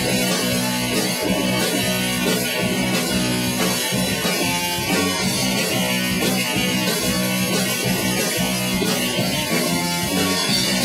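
Rock band playing live: electric guitars and bass over a drum kit, with the drums and cymbals coming in at the very start.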